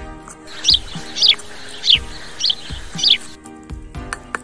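A bird chirping five times in quick succession, each chirp a short falling note, over background music with a steady beat.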